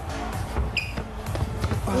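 Background music, with a large ball knocking several times as it bounces on a table-tennis table and is struck back and forth in a rally.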